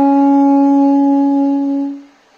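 Solo baritone saxophone holding one long, steady note, which fades and stops near the end.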